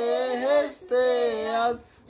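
A child singing a Bengali Islamic song without accompaniment: two long, held phrases with a short breath between them.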